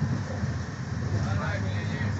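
Steady low rumble of a passenger train running along the track, heard from inside the carriage.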